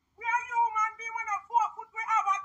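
A woman shouting in a shrill, high-pitched voice, in short phrases with brief breaks between them.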